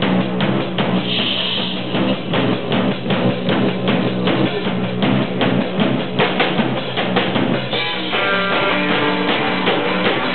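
Garage punk rock band playing live: a drum kit keeps a steady beat under electric bass and guitar. The drumming stops a couple of seconds before the end, leaving the guitars ringing on.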